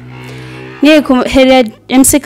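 A person's low, steady hum lasting under a second, then a woman starting to speak.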